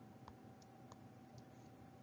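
Near silence: faint room tone with a thin steady tone and a few faint clicks of a stylus on a drawing tablet, two of them in the first second.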